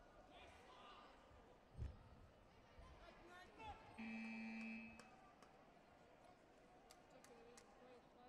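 Electronic competition buzzer sounding once as the match clock runs out: one steady tone about a second long. Before it come faint voices in the hall and a single low thump.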